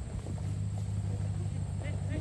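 A motor vehicle's engine running with a steady low hum that comes up shortly after the start, with faint voices near the end.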